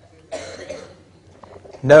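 A person coughs once, briefly, about a third of a second in. A man starts speaking near the end.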